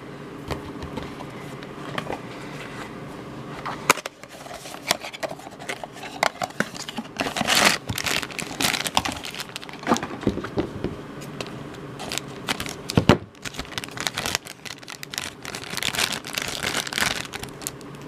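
Hands handling and opening a black foil blind bag: irregular crinkling and crackling, dense from about four seconds in, with a few sharper snaps.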